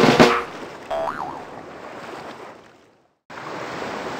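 Cartoon sound effects: a sudden sharp hit at the start, the loudest moment, then a short boing-like tone that rises and falls about a second in, over a noisy wash that fades out. After a brief silence a steady rushing ambience, like underwater surf, begins near the end.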